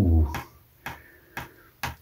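Three short, sharp clicks about half a second apart from the removed brass tap gland as it is turned and handled in the fingers.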